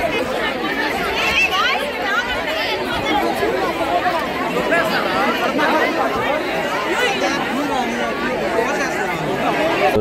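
Crowd of many people talking and calling out over one another, a dense, unbroken babble of overlapping voices, with some voices raised high above the rest.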